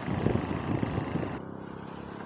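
A small car driving past on a highway with tyre and engine noise. About a second and a half in, it cuts to a quieter, steady low engine hum.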